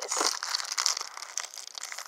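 Thin plastic packaging of a face-mask pack crinkling as it is handled and torn open, an irregular run of small crackles.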